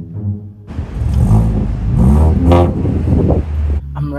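A car engine revving, its pitch rising and falling several times, starting abruptly about a second in and cutting off near the end, over background music.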